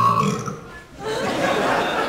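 A held musical note stops just after the start; after a brief lull, the hall fills with the murmur of many children's voices.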